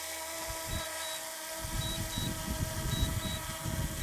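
DJI Mini 2 quadcopter hovering close by, its propellers giving a steady, many-toned whine. From about a second and a half in, a gusty low rumble of wind on the microphone joins it.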